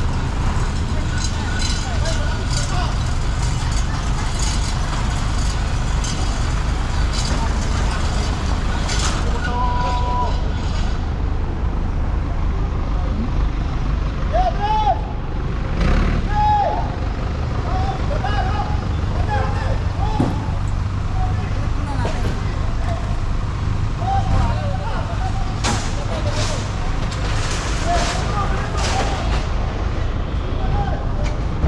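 Steady low rumble of an idling vehicle engine on a street, with people talking in the background and occasional sharp knocks.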